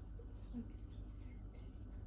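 Faint whispered speech: a child counting quietly under her breath, over low room sound.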